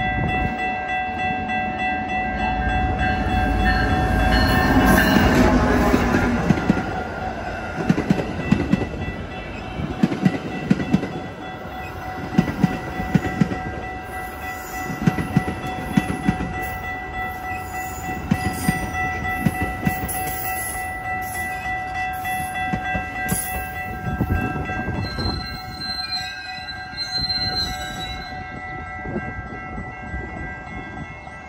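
Metra commuter train passing a grade crossing, over a steady crossing bell. The locomotive goes by with its horn sounding about four to six seconds in. Then the bi-level cars' wheels click over the rail joints in regular groups, and a brake squeal near the end shows the train slowing into the station.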